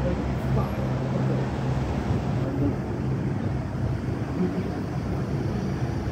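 Railway station platform ambience: a steady low hum with faint background voices.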